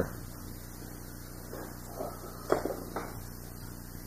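Clear plastic model-kit saucer parts being handled and fitted together: a few faint clicks and light taps of plastic, the sharpest about halfway through, over a steady low hum.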